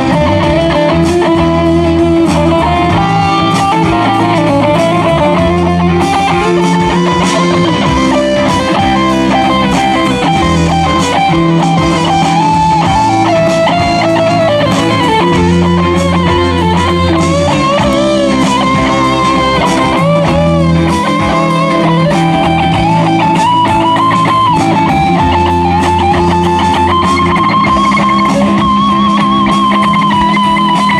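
Live blues-rock band playing an instrumental break: an electric guitar plays a lead line with bent and wavering notes over bass guitar and drums.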